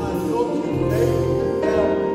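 Gospel worship song: a man's voice singing held notes over instrumental accompaniment with a steady bass line.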